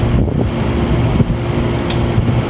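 Steady low rumble with a faint steady hum, and two small clicks, one about a second in and a sharper one near the end.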